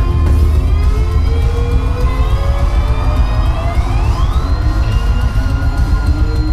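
Loud live heavy metal band sound with a heavy, steady low end, over which a single siren-like tone climbs steadily for about four seconds and then holds with a slight wobble.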